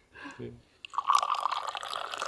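Mint tea poured in a long stream from a metal teapot held high above a small glass, the splashing pour starting about a second in and running steadily on.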